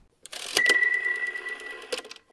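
Animated end-card sound effects: a swish and a sharp click about half a second in, then a single high tone ringing on with faint ticking, closing with another click near the end.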